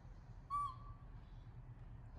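A baby macaque gives one short, high coo call about half a second in, over a low steady hum.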